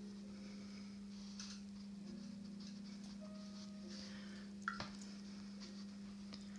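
Faint brushing of a paintbrush on watercolour paper, with a short click a little before the end, over a steady low hum.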